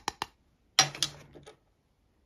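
Handling noise of a clear plastic diamond-painting tray. A couple of light clicks, then a sharp knock with a short rustle just under a second in as it is set down and the next item is picked up.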